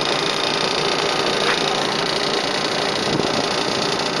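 Steady running noise of a Venetian vaporetto (water bus) under way: its engine and the rush of water and air past the boat, even throughout.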